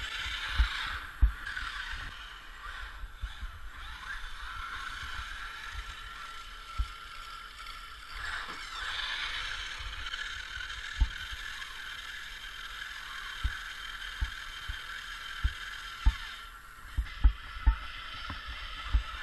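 Electric RC trucks' motors whining as they drive on ice, the pitch sliding up and down with the throttle, with scattered short low thumps.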